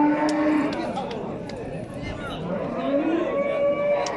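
Cattle mooing in long drawn-out calls: one call fading out just after the start and another rising and then held near the end, over the background murmur of a crowd.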